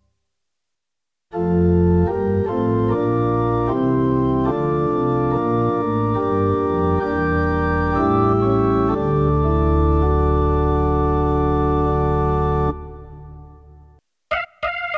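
Yamaha CLP745 Clavinova digital piano playing one of its organ voices. Sustained chords and a moving line start about a second in. The playing ends on a long held chord that stops suddenly a little over a second before the end, leaving a short fading tail.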